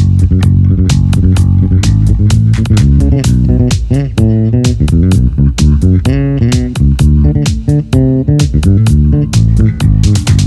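Fender Jazz Bass playing a syncopated funk riff, recorded direct through a preamp, busy low notes with sharp, clicky attacks.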